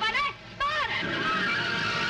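A van's engine running hard with its tyres skidding on a dirt road, a film sound effect that comes in about half a second in, after a short pause.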